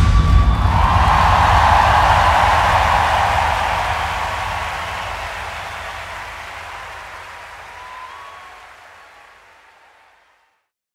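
Concert audience cheering and applauding just after the music stops, swelling about a second in and then fading out gradually to silence.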